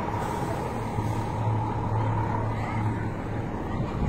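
A motor vehicle's engine running, a steady low hum that swells a little in the middle, with a faint steady higher tone over street noise.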